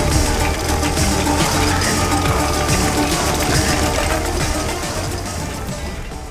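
Loud, dense film soundtrack music with a heavy low rumble, beginning to fade out near the end.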